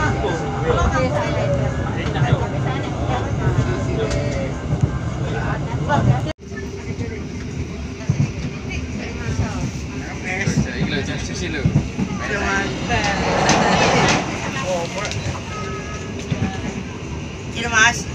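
Steady rumble of a moving passenger train heard from inside the coach, with passengers' voices over it. The sound drops out abruptly about six seconds in and comes back quieter.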